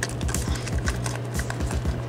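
Light, irregular clicks and taps of small plastic and diecast model parts and wiring being handled, over background music.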